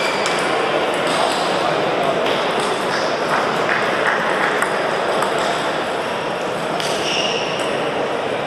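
Irregular clicks of table tennis balls bouncing on tables and striking bats at several tables across a sports hall, over a steady murmur of many voices.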